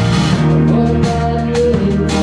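A rock band playing a steady groove: electric guitar, bass, drum kit and keyboards.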